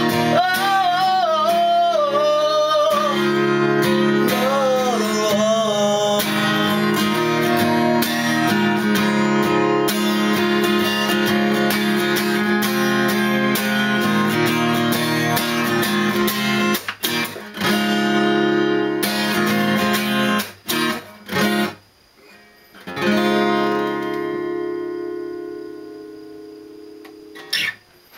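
Acoustic guitar strummed with a voice singing a last phrase in the first few seconds. The strumming goes on, breaks off in a few short stops, then a final chord rings out and fades away over several seconds.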